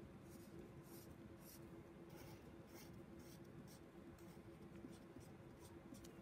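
Felt-tip marker scratching on paper in short, irregular colouring strokes, about two a second, faint.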